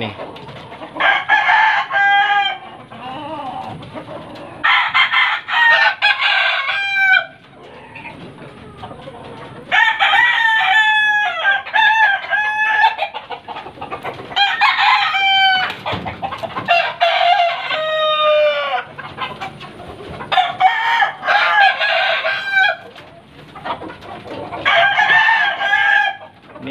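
Roosters crowing over and over, about seven crows each lasting a second or two, several trailing off in a falling note.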